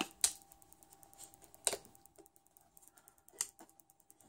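Clicks and light knocks from the hard casing parts of a disassembled rugged power bank being handled and fitted together: three sharper clicks about a second and a half apart, with faint ticks between.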